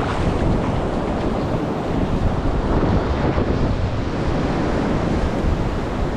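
Ocean surf washing up on a sandy beach, a steady rushing noise, mixed with wind buffeting the microphone.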